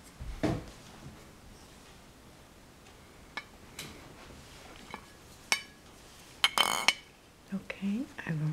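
Scattered small clicks and clinks of a plastic compact mirror case being handled and opened, with a louder brief clatter near the end.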